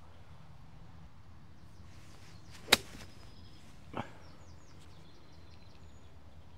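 Golf club striking the ball once on a short pitch shot: a single sharp click a little under three seconds in. Faint birds chirp in the second half.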